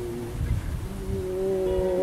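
A man singing long held, wordless notes with acoustic guitar. The notes grow louder after about a second and take on a slight waver near the end, with a few low thumps about half a second in.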